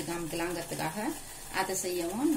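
A woman talking in Tamil, in short phrases with brief pauses.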